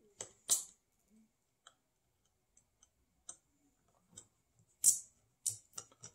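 Small screwdriver clicking and scraping against the screws in the motorized valve's plastic housing as they are backed out, with parts of the brass and plastic valve knocking together. Scattered sharp clicks, the loudest about half a second in and just before five seconds, and a quick run of clicks near the end.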